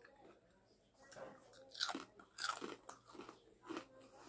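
Close-miked eating: a person biting and chewing crunchy food, giving a handful of short, crisp crunches spread over a few seconds.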